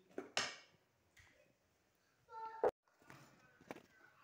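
Mostly quiet, with brief snatches of a voice and a couple of sharp clicks, one a little past halfway and one near the end.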